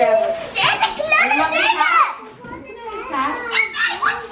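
Young children's voices, high-pitched excited chatter and calls with no clear words, easing off briefly past the middle and picking up again near the end.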